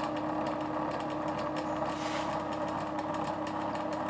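Bedini SSG monopole energiser running: its drive coil firing rapid pulses as the neodymium magnets on the spinning rotor pass, heard as a steady buzzing hum with a fast run of fine clicks.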